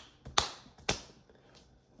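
Two sharp hand sounds about half a second apart, each with a brief ring in the room.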